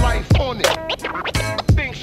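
Hip-hop backing track with a heavy beat and DJ turntable scratching: quick back-and-forth sweeps in pitch during a gap between the rapped lines.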